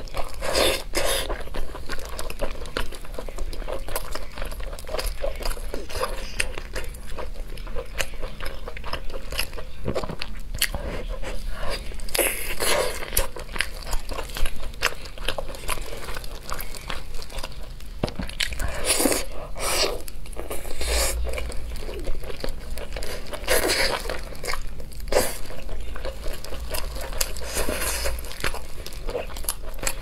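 Close-miked eating of a chili-coated whole chicken: wet chewing and biting with mouth clicks, coming in short louder bursts several times, along with the soft sound of gloved hands pulling the meat apart.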